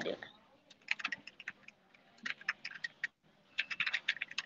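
Quiet typing on a computer keyboard: three short runs of quick keystrokes.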